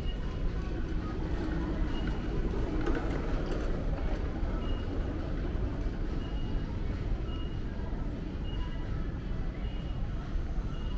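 Airport terminal ambience: a steady low rumble of ventilation and hall noise, with a brief swell of distant murmur a few seconds in and a short high beep recurring every second or two.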